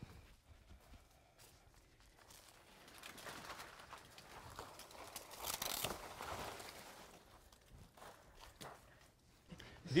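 Leaves and cabbage palm fronds rustling as the small palm is handled and cut back by hand, swelling in the middle and dying away, with a few faint clicks.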